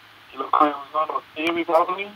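A person's voice speaking over a phone line, thin and narrow-sounding. It starts about half a second in and runs in several short phrases.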